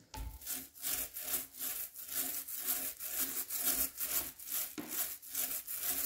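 Small foam paint roller rolling wet black water-based satin paint onto a primed laminate panel, in quick, even back-and-forth strokes that make a rhythmic sticky rubbing sound.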